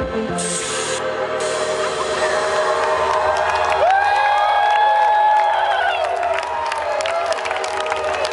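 A rock band ending a song: the low bass notes stop about half a second in while a held chord keeps ringing, and from about three seconds in the crowd cheers, whoops and claps over it, loudest around the middle.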